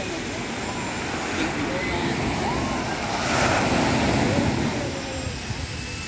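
Small waves washing onto a sandy beach over a steady low rumble, with faint distant voices; the wash swells louder about three and a half seconds in.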